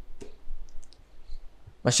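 A few faint, short clicks in a pause between sentences, then a man's voice starts again just before the end.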